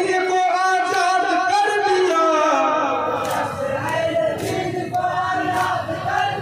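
A group of men singing a Jharni marsiya, an elegy for Imam Husain, together in a chant-like melody, with a few sharp knocks along with it.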